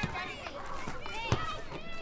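Children's high voices calling out over one another in a playground, with two sharp knocks, one at the start and another just past halfway.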